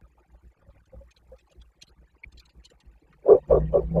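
A person laughing: a quick run of loud "ha" pulses about three seconds in, after a stretch of near quiet with faint scattered ticks.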